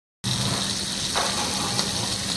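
Masala-coated tuna steaks sizzling in hot oil in a pan: a steady hiss over a low steady hum, with one short sound about a second in.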